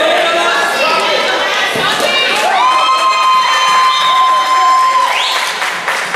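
A crowd of spectators, many of them children, cheering and shouting. One high-pitched voice holds a long shout from about two and a half to five seconds in, and a shriek rises in pitch right after it.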